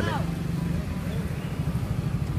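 Motorcycle engines running close by, a steady low rumble, with a faint voice in the background.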